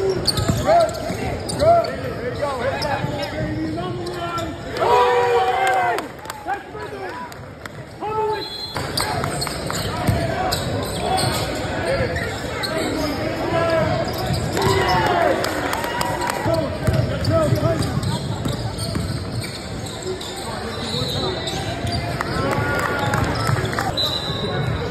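Basketball game on an indoor hardwood court: the ball bouncing on the floor amid players' and spectators' voices and shouts, echoing in a large gym hall.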